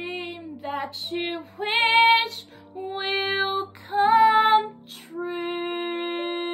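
A woman singing a slow melody in several phrases with vibrato, then holding one long steady note from about five seconds in.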